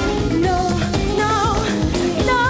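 A woman singing a pop song live over full backing music, the lyric "no no no", her voice wavering in pitch on the held notes.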